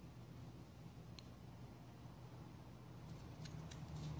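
Faint handling of a Roomba side brush motor's plastic gearbox and cover as they are fitted back together: one small click about a second in, then a few light clicks near the end, over a steady low hum.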